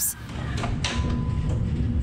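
HandyCare curved stair lift's drive motor running as it carries a rider along its rail: a steady low hum, with a brief rush of noise a little under a second in and a faint high tone for about a second after. The lift is one that keeps stalling at the landing turn.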